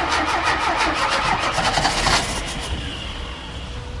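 Starter motor cranking the Chevy 500's four-cylinder 1.6 engine in a quick, even rhythm without it catching. The cranking grows weaker about halfway through and stops just before the end.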